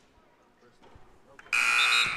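A gym's basketball scoreboard horn sounds suddenly about a second and a half in, one steady multi-toned note that is still going at the end, after a near-quiet moment.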